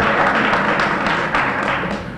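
An audience applauding, a dense spatter of claps that thins out near the end.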